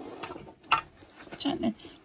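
Rustling of a large diamond painting canvas covered in resin drills as it is flexed and handled, with one sharp click a little under a second in.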